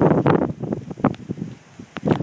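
Wind buffeting a phone's microphone, loudest in the first half second and then dropping to a lower rumble, with a few scattered short knocks.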